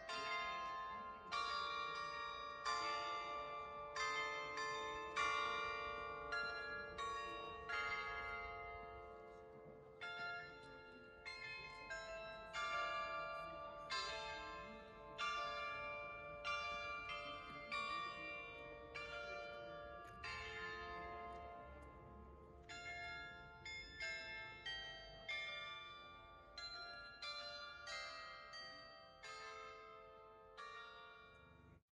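Chimes of tuned bells playing a tune, the notes struck one after another and left ringing into each other, in phrases with short breaks between them.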